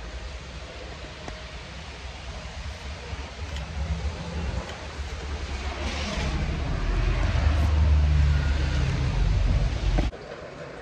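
Low rumbling outdoor street noise, building over the second half and loudest near the end, then cutting off suddenly.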